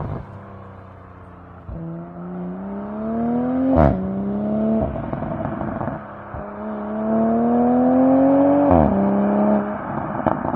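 BMW 840i Gran Coupé's turbocharged straight-six exhaust pulling hard twice, the revs climbing and then dropping at an upshift. A sharp crack from the exhaust marks the first shift, in the middle, and a lighter one the second, near the end.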